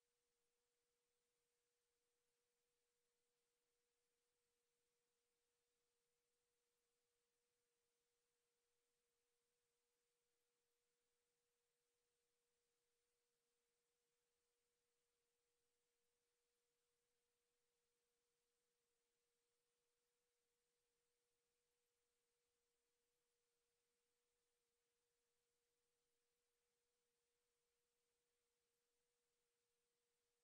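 Near silence, with only an extremely faint steady pure tone held unchanged throughout.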